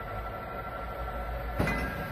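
Semi-automatic weigh filling machine running with a steady mechanical hum and a faint high whine. About one and a half seconds in comes a single sharp metallic clack as a filling nozzle is lowered into a pail.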